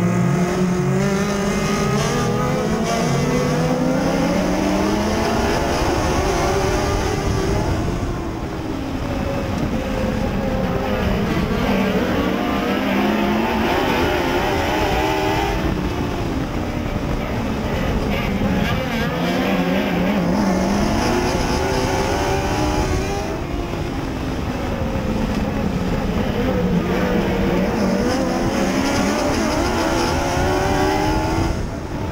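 Mod Lite dirt-track race car's engine at racing speed, heard from inside the cockpit. The pitch climbs down each straight and drops as the driver lifts for the turns, about every seven to eight seconds.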